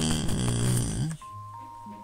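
A man's drawn-out, groaning vocal sound for about a second, then faint, steady held notes of background music.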